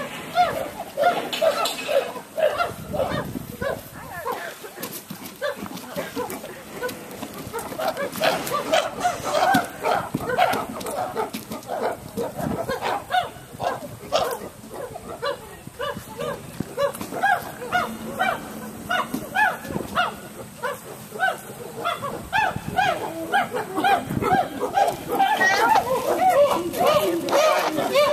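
Chimpanzees calling: long runs of short hooting calls, several a second, one after another, getting louder near the end.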